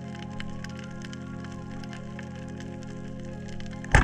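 Background music, then near the end a single loud, sharp crack as a band-powered speargun fires underwater.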